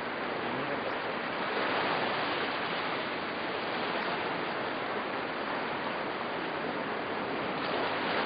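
Sea surf washing on the shore, a steady rush of waves.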